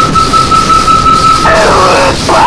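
Power electronics noise music: a steady high feedback whine held over a dense wall of distorted noise. Distorted vocals break in near the end.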